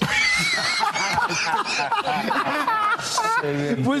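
Several people laughing together, with wavering high-pitched laughs overlapping, after a joke. A man's voice starts speaking again near the end.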